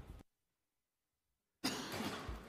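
The sound cuts out to dead silence for over a second, then hearing-room background noise comes back abruptly near the end, opening with a short sharp noise.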